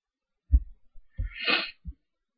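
Three soft low thumps of cards and hands on a desk, about a second in, then again near the end, with a short noisy breath through the nose between them.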